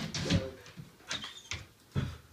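A border collie moving about excitedly on a hard indoor floor: a few scattered knocks and clicks of paws and claws, the loudest near the start.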